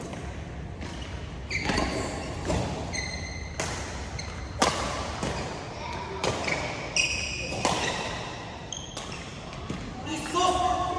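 Badminton rally: sharp racket hits on a shuttlecock roughly once a second, the loudest about halfway through, with short high squeaks of court shoes on the floor between them, echoing in a large hall.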